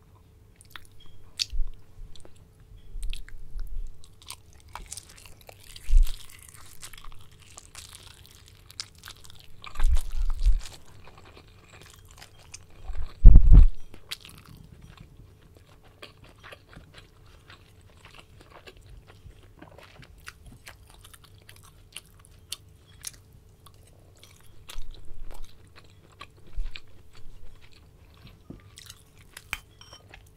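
Close-miked chewing of a soft steamed meatball, with many small wet mouth clicks. Several dull low thumps come through it, the loudest a little before halfway.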